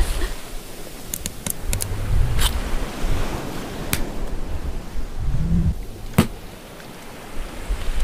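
Steady rushing sea-surf ambience, with a few sharp clicks scattered through it and a short low swell about five and a half seconds in.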